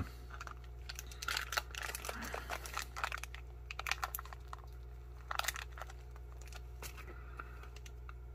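MRE foil pouch crinkling as it is handled: a scatter of faint crinkles and clicks, busiest in the first few seconds, over a steady low hum.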